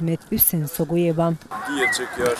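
A man's voice talking loudly in short, expressive phrases, then at about a second and a half an abrupt change to softer background voices.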